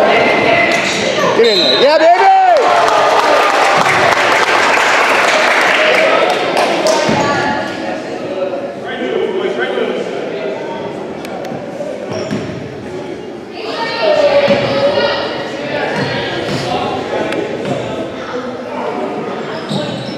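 Sounds of a youth basketball game in a gymnasium: a basketball bouncing on the hardwood court and indistinct shouts from players and spectators, echoing in the large hall. The noise is loudest for the first several seconds, eases off near the middle and rises again later.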